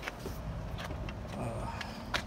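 Rear passenger door of a BMW E53 X5 being swung open by hand: a few faint clicks and handling noise over a low background rumble.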